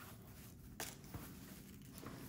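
Faint hiss of water-retaining polymer granules (Soil Moist) pouring from a plastic jug onto potting soil, with two light clicks about a second in.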